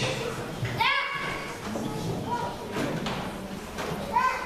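A young child's short, high-pitched call about a second in, rising sharply in pitch, over a low murmur in a large, echoing hall.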